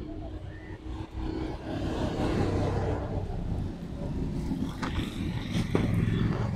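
A motor vehicle's engine running nearby with a steady low hum, growing louder about two seconds in.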